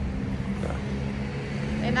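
A motor vehicle's engine running close by on the street: a steady low hum.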